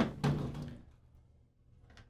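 Short knocks and clunks of an airsoft rifle's lower receiver being handled against a work table, in the first second.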